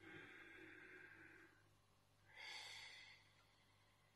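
A man's faint, slow breath in through the nose, then about two seconds in a shorter breath out, paced as in a slow breathing exercise.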